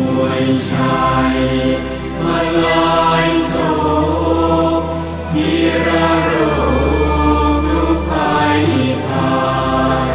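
A Thai Buddhist devotional chant of praise sung in verse to musical accompaniment, with long held bass notes changing every second or two beneath the voices.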